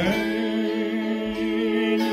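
A man and a woman singing a Lithuanian folk song together in long held notes, the lower voice sliding up into its note at the start, over the ringing strings of two kanklės (Lithuanian plucked zithers).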